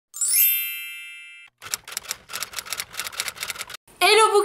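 An intro sound effect: a bright, shimmering chime that rings and fades over about a second and a half, then a rapid run of typewriter key clicks lasting about two seconds.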